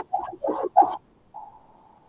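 A person's voice: three short muffled sounds in quick succession, then a faint brief hum.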